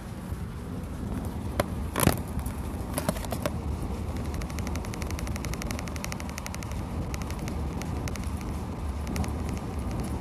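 Steady low rumble in a vehicle cabin, with several sharp clicks and knocks in the first few seconds from a phone being handled and adjusted. A fast, faint, even ticking runs through the second half.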